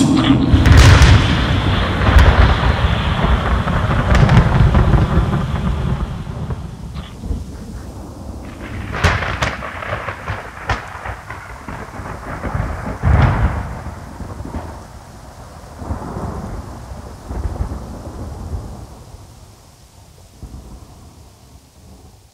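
Thunderstorm with rain: thunder rolling loudly at first and fading slowly, with a few sharper cracks around the middle, dying away near the end.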